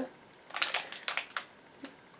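Small truffle wrappers rustling and crinkling as they are handled, a run of short crackles from about half a second to a second and a half in.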